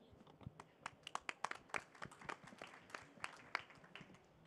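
Light, scattered applause: individual hand claps are heard separately, thinning out near the end.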